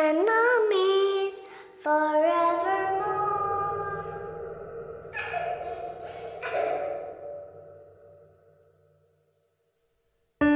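A lone voice singing the end of a slow song: a short bending phrase, then one long held note that slowly fades out, with two brief breathy sounds along the way.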